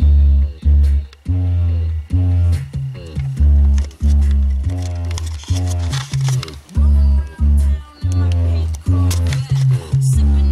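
A song with heavy, repeating bass notes playing loudly through a newly installed Pioneer DEH-15UB car stereo and its door and rear speakers. It starts suddenly and plays on steadily.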